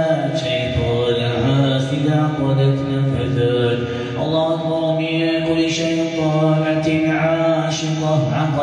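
A man's voice chanting ruqya recitation of Quranic verses in long, held melodic phrases, with only short breaks between phrases.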